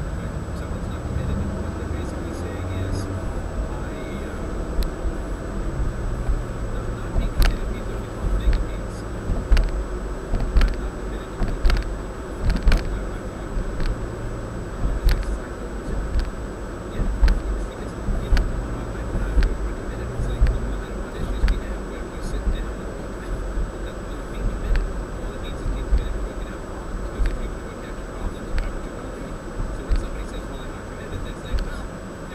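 Road and engine noise of a moving car heard from inside the cabin: a steady low rumble with scattered sharp clicks and knocks.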